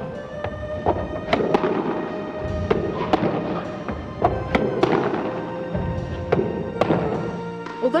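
Squash ball being volleyed back and forth, with sharp hits of racket on ball and ball on wall in quick succession, about one to two a second, over background music with held notes.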